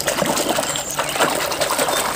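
Muddy water sloshing and splashing in a plastic basin as a hand scrubs a toy excavator under the surface, an unbroken churning wash.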